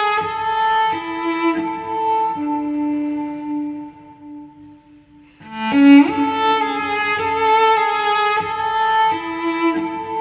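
Instrumental cello cover of a pop song: a bowed cello plays a slow melody in long held notes. One phrase dies away about four seconds in, and after a brief pause a new phrase starts with a strong bowed note.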